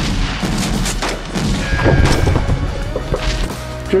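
Dramatic soundtrack music with a rapid string of sharp bangs and thuds running through it.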